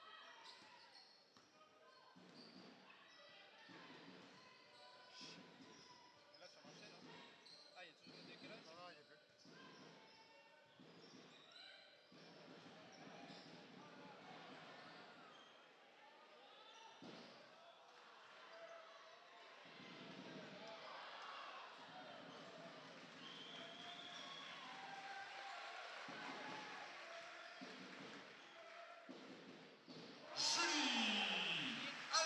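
A basketball being dribbled on a hardwood court, with sneakers squeaking and crowd chatter echoing through a large arena. All of it is quiet, and the crowd noise grows louder in the second half.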